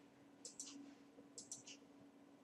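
Faint clicks of a computer pointing device: two quick double clicks about a second apart, then a single click, over a faint low steady hum.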